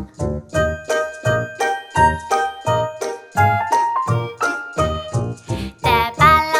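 Instrumental break of a children's song: a bell-like melody over a steady beat, about three notes a second, with no singing.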